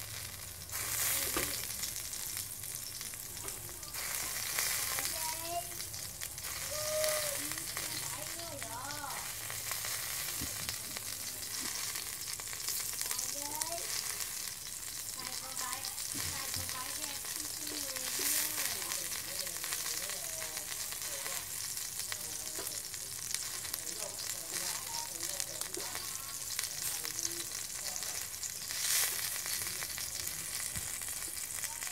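Slices of pork sizzling on the wire rack of a round tabletop grill, a steady hiss of fat and juices hitting the heat, swelling briefly several times.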